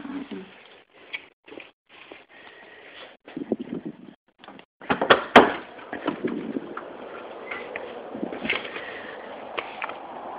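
A garage side door being opened by hand: scattered handling noises, then one sharp latch click about five seconds in, after which a steady background noise carries on.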